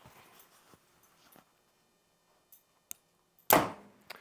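Bowtech Eva Shockey Gen 3 compound bow shot at 50 lb with a 350-grain arrow: a faint click, then a sharp shot about three and a half seconds in that dies away within half a second.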